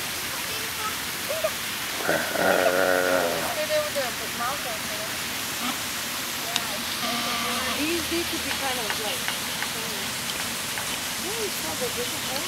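People talking quietly and off and on over a steady hiss, with the clearest stretch of voice about two seconds in.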